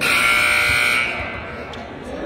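Gym scoreboard buzzer sounding once, a loud steady buzz lasting about a second and cutting off suddenly.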